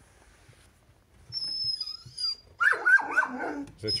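Dog whining in a thin high pitch, then a quick run of loud, sharp barks in the second half, excited at someone arriving outside.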